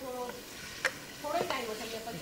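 Chicken pieces sizzling in hot oil in a deep frying pan while being stirred with a spatula, with one sharp click a little under a second in.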